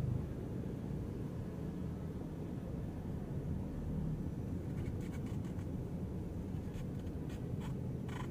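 Low, steady rumble of a car's engine and tyres heard from inside the cabin as it drives slowly, with a few faint clicks in the second half.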